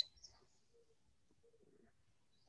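Near silence: a spoken word cuts off at the very start, followed by faint room tone with a few soft, scattered low sounds.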